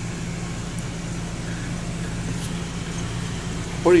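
Air conditioner running with a steady low hum over an even hiss.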